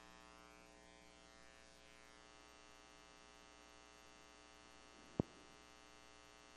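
Steady electrical mains hum and buzz on the sound feed, faint. A single sharp pop about five seconds in, much louder than the hum.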